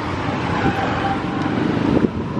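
Street traffic noise: a steady mix of vehicle engines and road sound.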